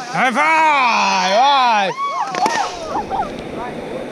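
River rafters yelling: one long drawn-out shout lasting nearly two seconds, then shorter calls from the crew. Rushing, splashing river water runs underneath in the second half.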